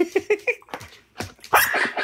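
Dog vocalizing when told to speak: a few short yips and whimpers, then a louder bark about one and a half seconds in.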